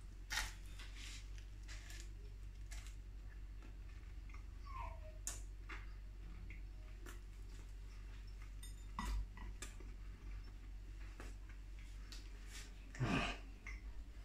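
A person chewing a mouthful of crisp-baked hot dog bun and sausage: faint scattered mouth clicks and smacks, with a louder mouth noise about a second before the end.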